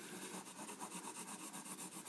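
Pencil lead shading on paper: faint, quick back-and-forth scribbling strokes, evenly repeated.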